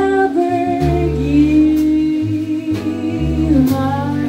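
Live jazz band: a woman's voice sings a slow melody, sliding up into a long held note, over upright double bass notes, keyboard and a few soft cymbal strokes.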